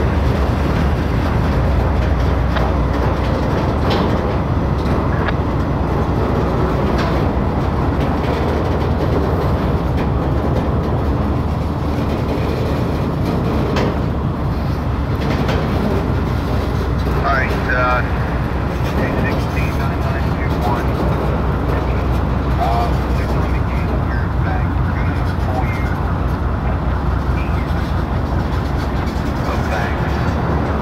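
Freight train cars rolling past close by: a steady rumble of steel wheels on rail with continuous rattle and clatter from the passing tank cars and hoppers.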